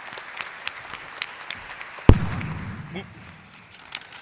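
Audience applause that thins out and fades over about three seconds, with a single loud thump about two seconds in.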